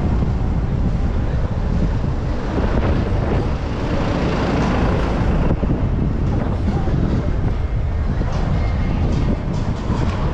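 Wind rumbling on the microphone over busy city street noise, with faint voices of passers-by.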